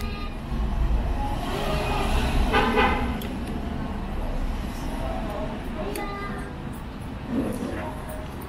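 Low, steady traffic rumble from the street, with a short horn-like toot about two and a half seconds in.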